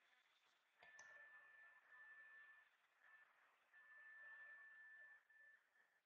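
Near silence: room tone, with a faint thin steady tone that breaks off now and then and one faint click about a second in.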